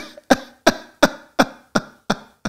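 A person laughing in a run of short, evenly spaced bursts, about three a second, each dying away quickly.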